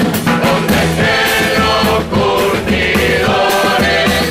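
A Uruguayan carnival murga choir singing together at microphones, backed by steadily repeating percussion strikes.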